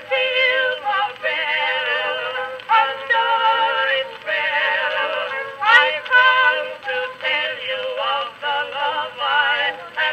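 Edison Amberola 30 cylinder phonograph playing a 1912 Edison Blue Amberol record of a song for vocal duet and orchestra, an acoustic-era recording heard through the machine's horn, with little bass.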